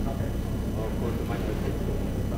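Faint, indistinct talking over a steady low hum.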